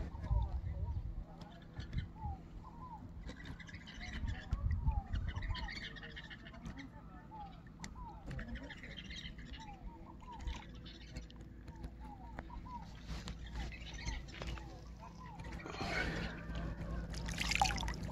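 Birds calling in short, repeated chirps from the trees along the riverbank, over low rumbles at times. Near the end there is a louder burst of noise.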